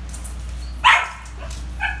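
Brown poodle barking twice at a balloon it is playing with: a loud bark about a second in, then a shorter, softer one near the end.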